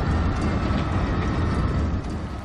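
Loud, steady low rumble, a dramatic sound effect laid under a TV show's title graphic.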